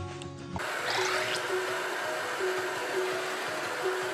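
Hand-held hair dryer blowing steadily, starting about half a second in, under background music with a simple repeating melody.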